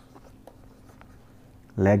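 Faint ticks and scratching of a stylus writing on a tablet, in a quiet pause. Near the end a man's voice starts speaking.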